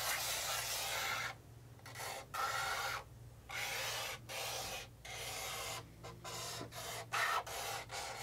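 Chalk scraping across a blackboard in a run of about eight drawing strokes, each lasting half a second to a second, with short pauses between them.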